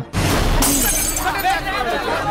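A sudden crash of shattering glass about half a second in, over voices.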